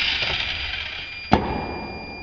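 Micro 1:100-scale RC cars' tiny electric motors and gears running at speed: a steady high whine over a rushing hiss. A sharp knock a little over a second in.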